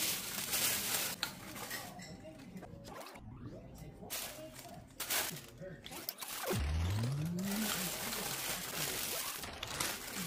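Tissue paper and clear plastic wrapping rustling and crinkling in stretches as they are handled and pulled out of a gift box. A brief rising vocal sound comes about two-thirds of the way through.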